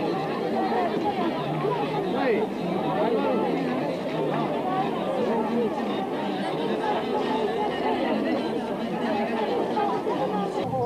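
Market crowd chattering: many voices talking over one another at once, with no single speaker standing out.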